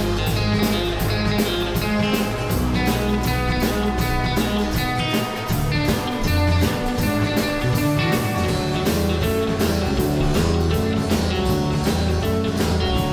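Live rock-and-roll band playing an instrumental intro: electric guitars, bass guitar and drum kit with a steady beat.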